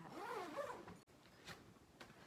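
Zipper on a Sprayground backpack pocket being pulled open, in quick sweeping strokes for about a second, then a single light click about a second and a half in.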